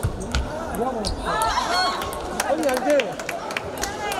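Table tennis rally: the ball clicking off bats and table in a quick, uneven series of sharp ticks, with voices talking in the background.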